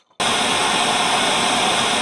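Television static: a steady, loud hiss of white noise. It starts abruptly a moment in and cuts off suddenly at the end.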